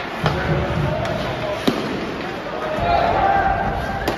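Ice hockey sticks and puck clacking on the ice in an indoor rink: two sharp clacks, about a third of a second in and again near 1.7 seconds, over the scrape and hum of the game.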